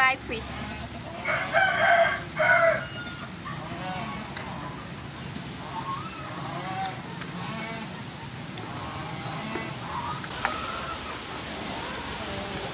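A rooster crows once, about a second in, the loudest sound, over the steady low simmer of fish cooking in tomato sauce in an open pan.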